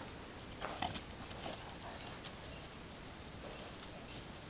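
Steady high-pitched chorus of insects, with a few brief faint scuffling sounds and a sharp knock about a second in.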